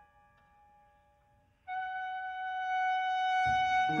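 Contemporary chamber music for piano and ensemble: a piano chord dies away to near quiet, then about two seconds in a single long note on a wind instrument enters and is held steadily. A low note sounds just before the end.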